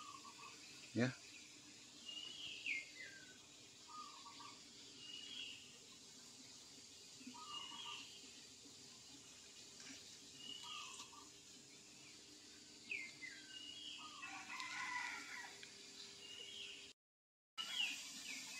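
Faint bird calls repeating every second and a half to two seconds, each a short high note sliding downward followed by a lower note, over a low steady hum.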